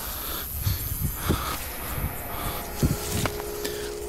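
Leafy plants and grass stalks rustling and brushing as someone pushes through them on foot, with soft low bumps of steps and camera handling.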